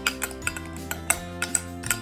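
Metal teaspoon clinking and scraping against a glass jar as whipped coffee foam is scooped out, a light click every fraction of a second, over background music.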